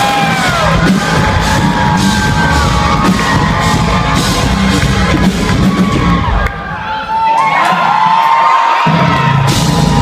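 A live rock band plays loud through a venue's PA, heard from among the crowd: steady drums and bass under high gliding melodic lines. About six and a half seconds in, the drums and bass drop out for roughly two seconds, then come back in.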